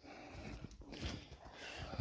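Footsteps crunching through snow and brushing past bare branches, uneven and fairly quiet.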